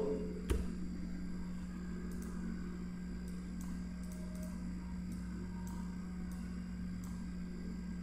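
Steady low hum under faint computer keyboard and mouse clicks: one sharper click about half a second in, then soft clicks every half second or so.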